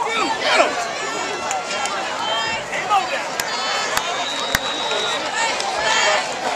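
Football crowd in the stands shouting and cheering, many voices overlapping, with a few sharp claps and a thin high steady tone for about a second past the middle.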